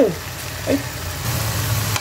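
Ground-pork tomato sauce sizzling steadily in a wok, over the steady low hum of an induction cooker's cooling fan.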